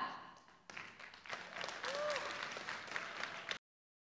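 Applause: many hands clapping, cut off abruptly near the end.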